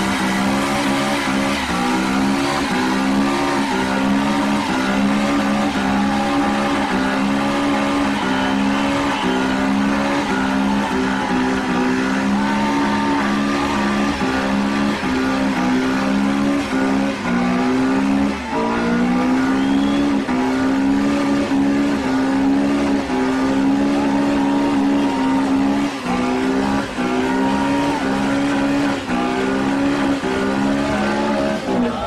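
A compact hatchback's engine held at high revs through a long front-wheel burnout, its pitch stepping up and down as the throttle is worked, with the tyres spinning on the pavement.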